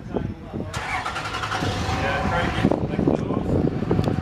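An engine running, with a louder rushing burst of noise starting about a second in and lasting about two seconds.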